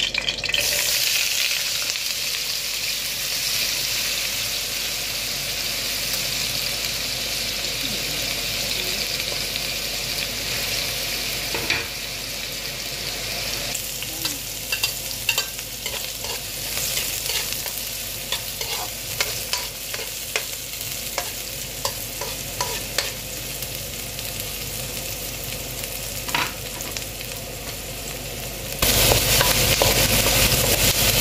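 Diced potatoes, then chopped red onions, sizzling in hot olive oil in a frying pan: a steady hiss. From about halfway through, a wooden spoon scrapes and taps against the pan as the food is stirred. Near the end a louder hiss cuts in suddenly.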